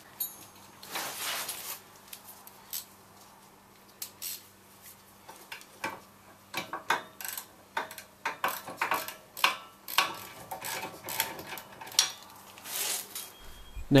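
Irregular metallic clicks and clinks of tools and steel parts as a brake caliper mounting bracket is bolted back onto a car's rear hub carrier, with a short rub about a second in.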